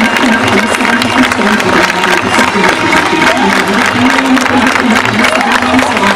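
Devotional aarti music: a sung melody over dense percussion, with a crowd in the background.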